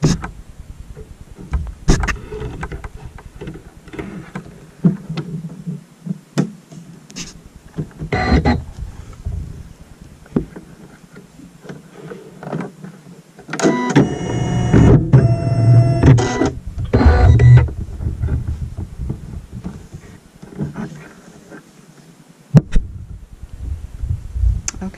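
An embroidery machine being rethreaded: scattered light clicks and rustles of thread handling, and a small motor in the machine running with a pitched whine for about three seconds a little past the middle. A sharp click comes near the end.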